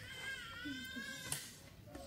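A mourner's high-pitched, wavering wail of grief, held for about a second before breaking off.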